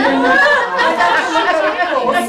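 Several women talking at once: overlapping conversational chatter, with no single voice standing out clearly.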